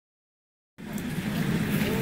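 Silent for the first moment, then from just under a second in the steady rumble of an ER9M electric multiple unit running along the platform.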